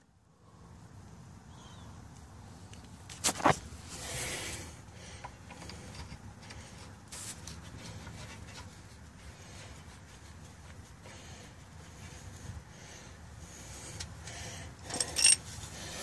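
Faint metal clinks and rubbing as nuts are spun finger-tight onto the drive shaft flange bolts, with a sharper clink a few seconds in and another near the end.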